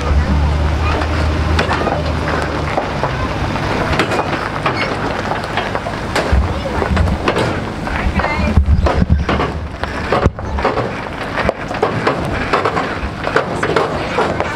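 Truck engine running under tow load, with a steady low hum for the first few seconds that turns uneven, amid repeated clattering and rattling knocks; indistinct voices mixed in.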